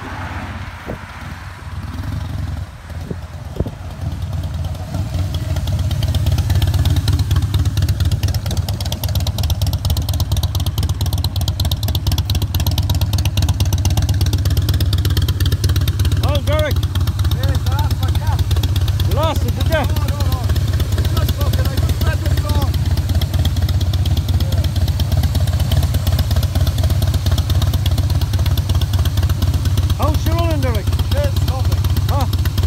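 A Harley-Davidson V-twin motorcycle engine idling steadily close by. It comes in loudly about five seconds in, after a quieter stretch of passing road traffic. Faint voices are heard now and then over the idle.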